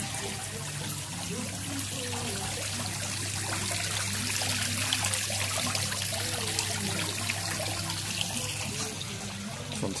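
Small decorative garden fountain running: water jetting up from its pump and splashing steadily back into the basin.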